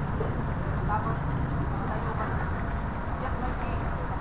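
Steady low rumble with faint voices now and then.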